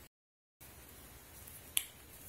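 Faint room tone that drops out to dead silence for about half a second, then one sharp click near the end.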